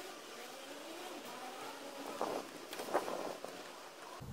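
Faint outdoor background noise, with a couple of soft taps a little past the middle.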